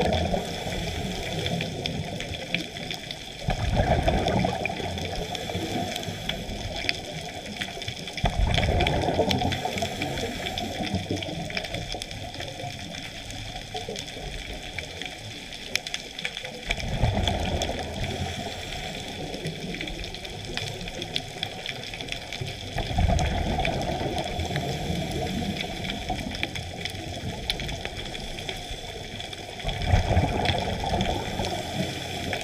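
Scuba diver's regulator underwater: bubbling, gurgling exhalations in surges of a few seconds, one every five to eight seconds, over a steady high whine.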